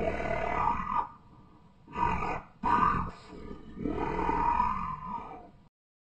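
An animated monster roars four times in rough bursts. The last roar is the longest and cuts off abruptly near the end.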